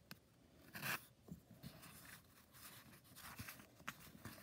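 Faint rustling and light scratching of cotton fabric and thread being worked with a metal stiletto, picking out basting stitches.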